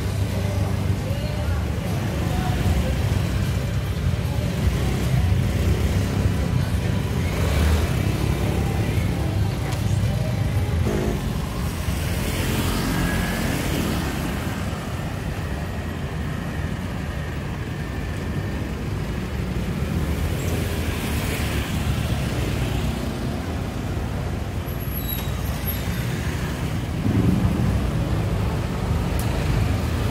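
Street traffic ambience dominated by motor scooters running and passing close by, with a steady low engine rumble, several passes and a louder one near the end. People's voices and some music are mixed in.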